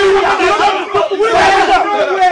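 A group of men yelling and shouting over one another in a loud commotion, with no clear words.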